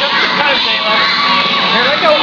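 A group of children shouting and cheering, many voices overlapping.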